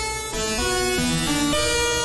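Arturia Pigments software synth patch of heavily detuned unison saw waves through a feedback comb filter and hard compression, giving a dissonant, not really musical tone. It plays a run of notes that change pitch every few tenths of a second, then holds one note from about the middle on.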